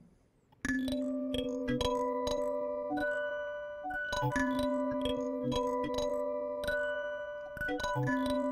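Empress ZOIA granular patch output: sustained pitched tones layered in octaves, the octave-up cascading effect of its granular modules, broken up by many short clicky grain onsets. It starts about half a second in, after a moment of silence.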